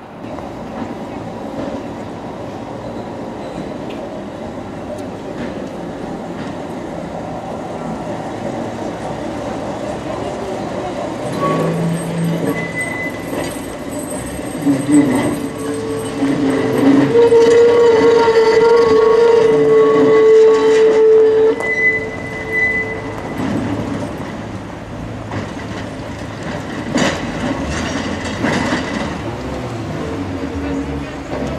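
1949 type N two-axle tram (a KSW wartime-standard car) passing close by: its rumble grows to a peak about halfway, with a steady whine from the running gear, then fades as it moves away, with a few knocks of wheels over the rails near the end.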